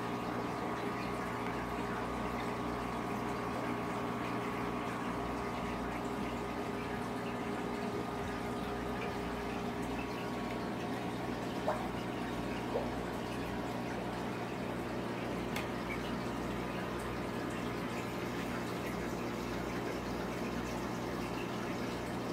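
Aquarium filter running: a steady electric hum with a low water sound, unchanging throughout, with two faint clicks about halfway through.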